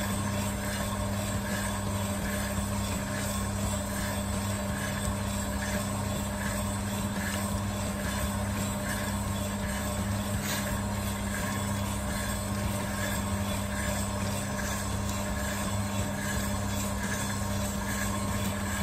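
Electric drum coffee sample roaster running steadily with a low motor and fan hum and a faint regular pulse, as the beans tumble through the late stage of the roast just before first crack. A single sharp click comes about ten seconds in.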